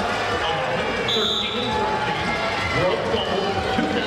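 Referee's whistle, one short steady blast about a second in, restarting the bout, over the chatter and calls of an arena crowd.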